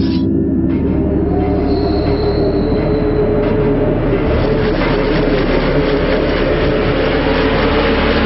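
A loud, sustained, dissonant screeching drone from a film trailer's soundtrack, many held tones grinding together with a thin high whine about two seconds in.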